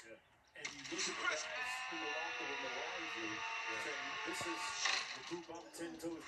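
Television commercial soundtrack: after a brief hush, a held musical chord comes in about a second in and sustains, with voices underneath, then fades near the end.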